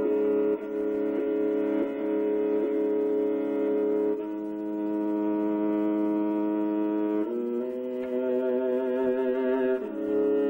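Kyl-kobyz, the Kazakh two-stringed horsehair fiddle, bowed solo in a kui: long held notes rich in overtones, then about seven seconds in it moves up to higher notes with a wavering vibrato.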